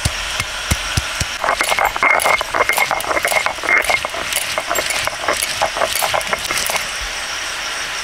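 Stone roller on a shil-nora grinding slab crushing garlic and ginger: a few dull thumps as the cloves are pounded in the first second or so. Then rapid gritty scraping and clicking of stone on stone as they are ground to a paste.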